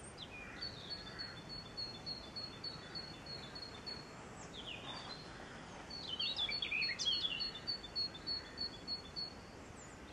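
Birds singing over a faint steady hiss. One bird repeats a short high chirp about three to four times a second, in two runs with a pause between. In the second half a louder burst of tumbling chirps drops in pitch.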